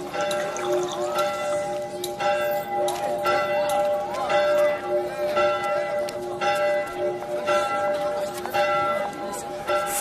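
Church bells ringing, one stroke about every second, each leaving a steady ringing tone that carries into the next, over background crowd voices.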